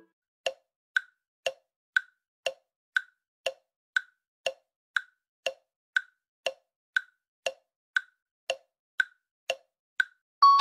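Countdown-timer ticking sound effect: short, sharp tick-tock strokes twice a second, alternating between a higher and a lower tick, about twenty in all.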